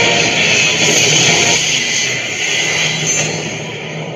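Guitar-driven music played from a USB stick through a D-Power T16 Bluetooth speaker, its level easing down over the last two seconds.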